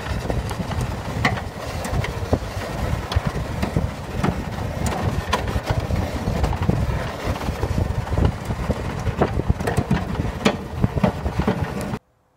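A 2000 Dodge Neon's four-cylinder engine running under load inside the cabin as the car pushes a plow blade through wet, heavy snow, with many sharp knocks and clatters throughout.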